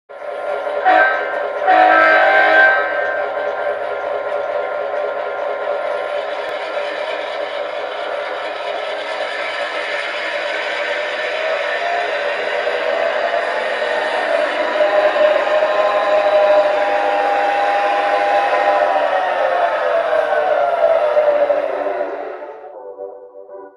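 Sound from a LokSound 5 XL decoder in a USA Trains Gauge 1 GP9 model, through the model's speaker: two diesel horn blasts, the second longer, then the diesel engine sound running. The engine sound rises in pitch partway through and falls back near the end.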